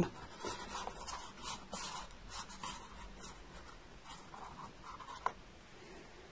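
Faint rubbing and rustling of hands handling a paper cup and its drinking-straw arms mounted on a pin, with one small click about five seconds in.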